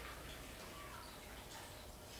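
Faint, steady trickle of water poured from a plastic jug into a sealable plastic bag.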